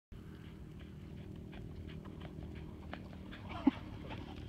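Sand avalanching down a dune under running feet, giving a steady low booming drone (singing sand), with a quick patter of footfalls. One short, loud low sound comes near the end.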